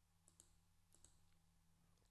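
Near silence, with two or three very faint computer mouse clicks.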